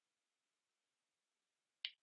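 Near silence: room tone, with one short faint click near the end.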